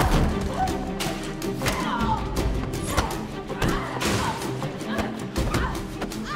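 Tense orchestral film score over a hand-to-hand fight: repeated thuds and smacks of blows and bodies hitting things, with strained gasps and grunts. The sharpest hit comes about halfway through.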